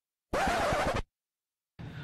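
A short record-scratch sound effect, about three-quarters of a second long, starting and stopping abruptly.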